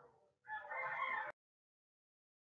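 A rooster crowing, one call of under a second that is cut off abruptly.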